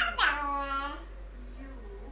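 A toddler's high-pitched squeal: one drawn-out call of about a second that drops in pitch at the start and then holds.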